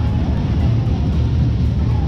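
Steady low rumble of fairground background noise, with faint voices of the crowd in it.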